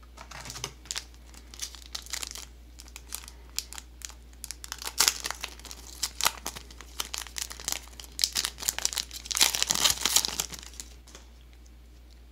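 Foil booster-pack wrapper of a trading card game crinkling and tearing as the pack is pulled from the box and opened, in irregular crackles that are loudest shortly before the end.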